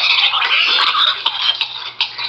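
A man gagging and sputtering as saline from a neti pot runs through his nose into his throat: a harsh, ragged choking sound that carries on for most of the two seconds and fades near the end.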